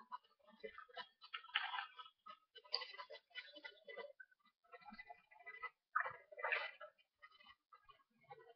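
A person chewing a grilled cheese sandwich: irregular mouth clicks and smacks, with short crunchy bursts of bread.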